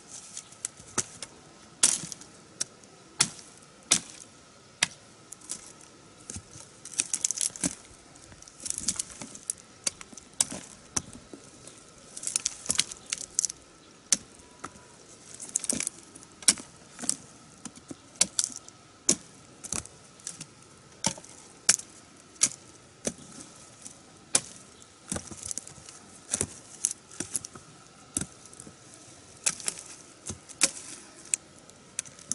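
Large knife chopping freshly dug cassava roots off their stems. Sharp, irregular strikes come about once or twice a second, with bursts of rustling dry stalks and twigs between them.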